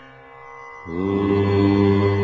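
Devotional intro music of a chanted mantra: one long held note fades away, and about a second in a new long chanted note slides briefly up and is held steady.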